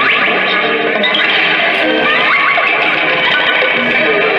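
Amplified prepared electric guitar, its strings rubbed and scraped with a hand-held orange plastic object. The result is a dense, continuous wash of noise and many sliding, gliding pitches.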